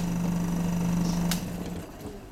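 Electric vacuum pump running with a steady hum, then switched off: a click about one and a half seconds in, after which the hum drops away as the motor stops.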